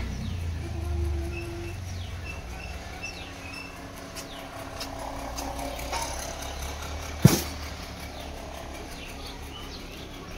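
Outdoor ambience: a low steady rumble with faint bird chirps, and a single sharp knock about seven seconds in, the loudest sound.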